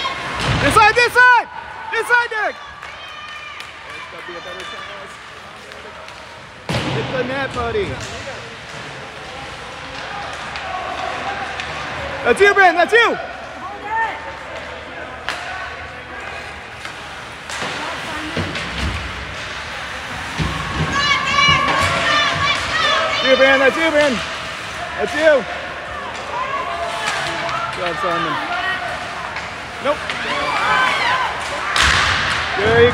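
Live ice hockey play in an arena: scattered sharp knocks of pucks, sticks and bodies against the boards, with short high shouts from players and spectators coming in bursts, the loudest about a second in and again near the middle.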